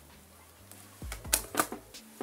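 Tarot cards being handled and laid down on a table: about four sharp taps and flicks in the second half, the first two with a soft thud of the deck on the table.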